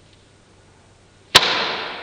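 A stretched, uninflated rubber balloon snapping: one sharp crack just past the middle, followed by a noisy tail that fades over about a second.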